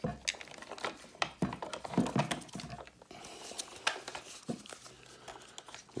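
Gloved hands handling the plastic parts and hose of a Vax Blade cordless vacuum: scattered small clicks and knocks of plastic with short rustles.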